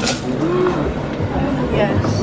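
Indistinct voices over a steady low hum, with a sharp click right at the start.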